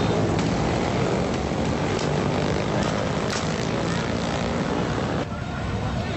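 Motorcycle engines running amid a loud, dense street din with voices, cutting off sharply about five seconds in.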